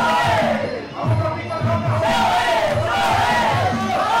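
Sarama, the traditional Muay Thai fight music: a reedy Thai oboe (pi) playing a wavering, bending melody over a steady drum beat, with a brief dip about a second in.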